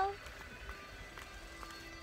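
Background music cuts off abruptly at the start, leaving faint outdoor ambience: a low rumble with a few faint ticks.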